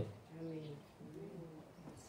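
A bird cooing faintly twice, two short calls that each rise and fall a little in pitch.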